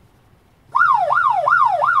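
Siren sound effect played loud through speakers, starting under a second in: a fast yelp, the pitch rising sharply and falling back nearly three times a second.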